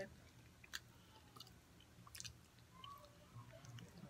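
Faint chewing of a cookie: a few soft crunches and mouth clicks, the sharpest about a second in and about halfway through.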